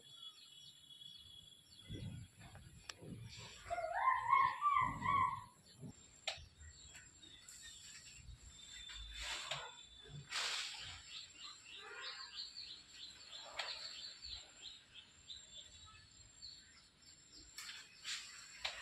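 Birds calling: a few loud pitched calls about four seconds in, then a quick run of repeated high chirps in the middle, over a faint steady high tone.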